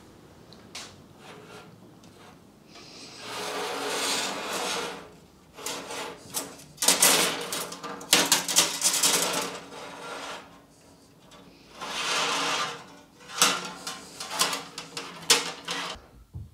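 Hard metal brake pipe being bent by hand around a tube bender die clamped to a workbench: several spells of rubbing and scraping as the tube is drawn off its coil and slides over the bench, with light clicks and taps between them.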